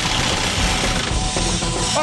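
Compressed-air rock drill hammering into hard rock, a dense continuous rattle. Background music with held tones comes in over it about halfway through.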